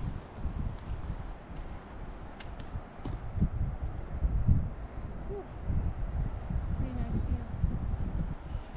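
Wind buffeting the camera microphone in uneven gusts, strongest around four to five seconds in.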